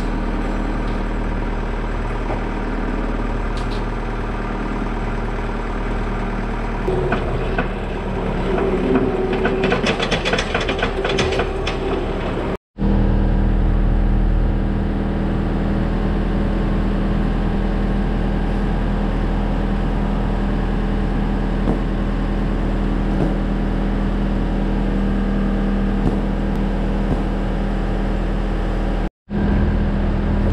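A vehicle engine running steadily at idle, with irregular clatter and clicks for a few seconds in the first half. The sound cuts out abruptly twice.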